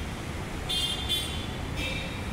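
Steady road traffic rumble, with a vehicle horn honking twice: a longer high-pitched honk about two-thirds of a second in and a shorter one near the end.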